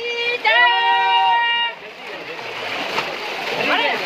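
A man's long, drawn-out shout in the first half, then splashing water from bathers ducking and scooping water in a shallow pool, growing louder toward the end.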